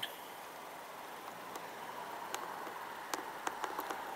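Low, steady outdoor background hiss, with a few small sharp clicks in the second half from handling a handheld camera as it pans.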